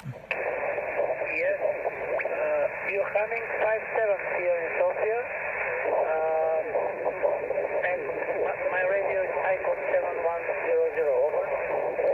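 A distant station's voice received on 20-metre single sideband through a Yaesu FT-817 transceiver's speaker: narrow, tinny speech cut off above about 3 kHz, mixed with steady static hiss and a faint steady tone.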